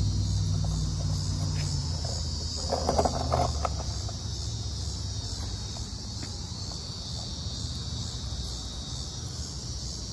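A steady, high-pitched buzzing chorus of cicadas, gently pulsing, with a low hum underneath that fades out about four seconds in.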